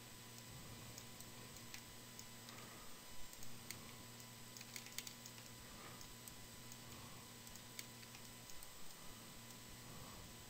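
Faint, scattered clicks of a computer mouse and keyboard as edges are selected in 3D software, over a low steady hum.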